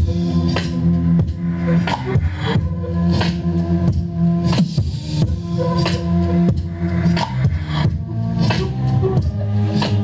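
Electronic beat played back over the speakers from a laptop and MIDI keyboard: sustained low bass and chord tones under a steady, regular drum pattern.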